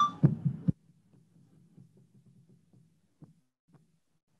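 A loud, low pulsing buzz, about ten pulses a second, with a few brief high ringing tones over it. It cuts off suddenly under a second in and leaves only a faint low pulsing with a couple of small clicks.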